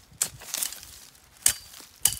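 Machete blade chopping into soil: a sharp strike just after the start and a louder one about a second and a half in, with a lighter scrape of dirt between.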